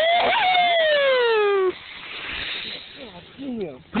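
A cliff jumper's long yell, falling steadily in pitch as he drops, cut off abruptly a little under two seconds in as he hits the lake, followed by a softer splash of water.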